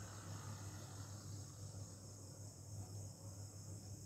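Faint steady background noise: a low hum with a thin, steady high-pitched whine above it.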